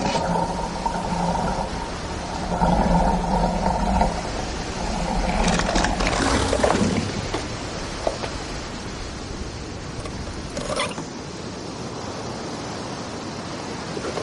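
Shower tap turned on and the water pipes groaning with a steady hum and rattle for about seven seconds, loudest just before it dies away, with no water coming out: the house has no water supply.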